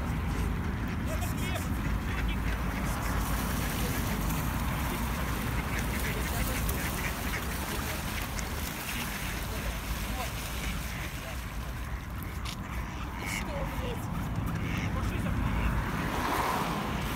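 A flock of mallard ducks quacking, with scattered calls over a steady low background rumble.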